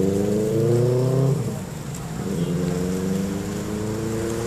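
Road vehicle engines accelerating along a street. One engine note climbs steadily and fades about a second and a half in, and a second rising engine note starts just past the halfway point.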